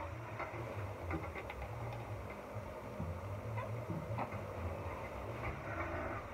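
Faint scattered clicks and light rustles of objects being handled, over a low steady hum.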